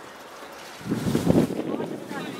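Wind buffeting the microphone in a gust of about a second, starting near the middle.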